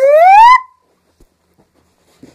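A person's voice in a loud, drawn-out "ooh" that climbs steadily in pitch and breaks off suddenly about half a second in.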